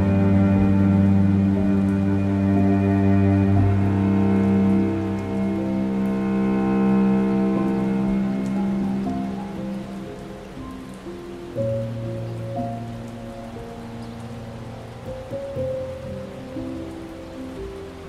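Slow, low cello music in long held notes over a steady rain sound. The music fades about halfway through, leaving the rain more to the fore, and softer held notes come back in.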